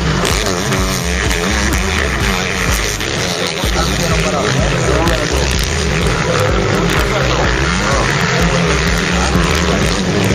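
Motocross dirt bike engines revving and rising and falling in pitch as the bikes race around the track, mixed with music and indistinct voices.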